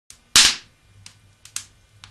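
A loud, sharp bang from the fireplace about a third of a second in, followed by a few smaller pops as sparks fly from the fire.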